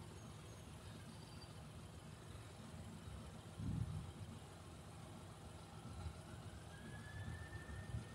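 Faint airport ambience: an uneven low rumble with a brief swell a little before the middle, and a faint rising whine near the end.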